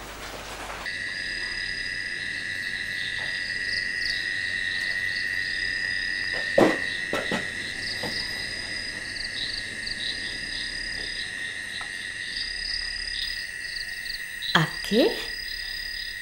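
Night chorus of insects and frogs: a steady high drone with repeated chirping trills above it. A sharp click about six and a half seconds in and a couple of short sounds near the end.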